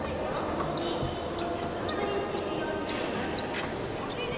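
Indistinct background chatter of people, too faint for words, with several short, high-pitched ticks scattered through it.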